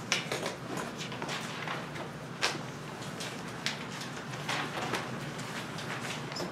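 Lecture-room sounds while a class works on its own: a steady low hum with scattered small knocks and rustles. A sharp knock comes right at the start, and the loudest one comes about two and a half seconds in.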